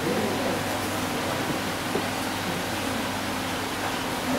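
Steady outdoor background noise: an even hiss with a low hum beneath it.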